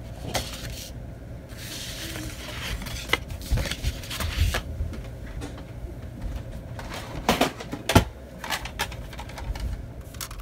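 A sheet of scrapbook paper rustling and sliding over a cutting mat as it is handled and laid down, with a few sharp taps and knocks on the work surface, the loudest near the end.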